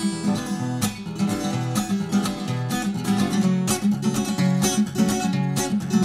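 Acoustic guitar strummed steadily with no singing: an instrumental break between sung lines of a song.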